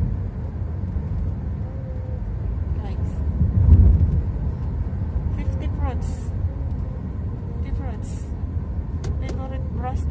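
A car driving slowly, its low engine and road rumble heard from inside the cabin, swelling louder about four seconds in. Faint voices come and go over it in the second half.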